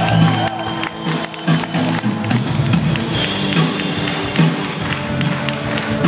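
Live rock band playing, with a steady drumbeat under bass and keyboard lines, heard from within the audience.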